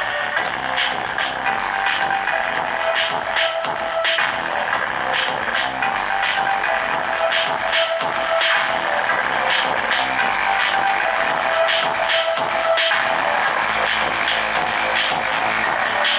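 Electronic dance music with a steady beat played through a homemade 2SA1943/BD139 transistor amplifier into a woofer, the amplifier running on about 12 volts. The sound is thin, with little bass.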